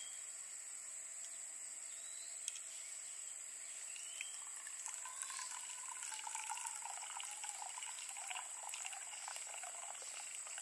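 Water pouring from a vacuum flask into a stainless steel mug, a trickle that starts about five seconds in and carries on to the end.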